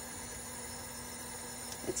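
Steady low hiss of room background with a faint steady hum, and no distinct sounds, in a pause between words.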